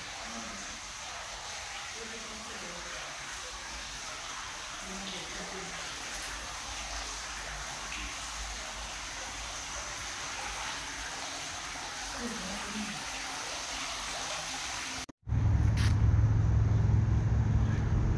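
A tiered stone fountain splashing into its pool, heard as a steady hiss of falling water, with faint voices in the distance. A little after the middle it cuts out abruptly, and a loud, low, steady hum takes over to the end.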